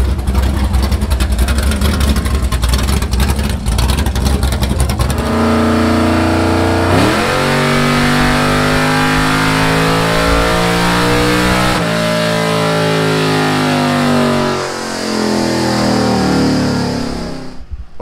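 Chevrolet Monte Carlo's engine running with a loud lumpy rumble, then, after a cut, making a wide-open-throttle pull on a chassis dyno. The pitch rises steeply about seven seconds in, climbs steadily, then falls away near the end as the throttle closes. The pull makes 428 horsepower at the wheels.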